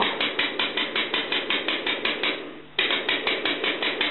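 ASTEC 250 W PC power supply clicking rapidly and evenly, about six clicks a second, with a brief break about two and a half seconds in before the clicking resumes. The clicking is the unit switching on and off straight away in pulses instead of giving a steady output, a fault the owner cannot work out.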